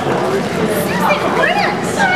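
Several people talking at once, their voices overlapping into indistinct chatter.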